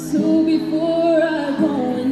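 Female voice singing long held, slightly wavering notes of a slow song into a microphone, with a short breath between phrases near the end.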